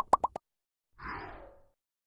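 Cartoon-style pop sound effects from an animated like-and-subscribe graphic: a quick run of four rising bloops, then a short whoosh about a second in that falls in pitch.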